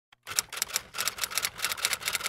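Typewriter sound effect: a quick, even run of key clacks, about six a second.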